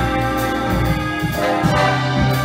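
Jazz big band playing live: saxophone, trumpet and trombone sections sounding held chords over bass and drums, the chord changing about halfway through.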